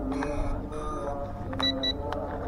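Two short high electronic beeps from a toy drone's remote controller near the end, over soft background music.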